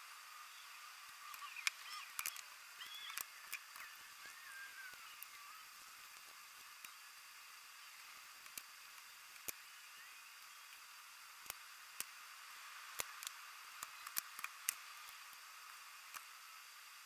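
Faint, scattered clicks and taps of a small engine carburetor and its metal parts being handled and brushed clean over a tub of cleaning solution, with a few brief squeaks in the first few seconds.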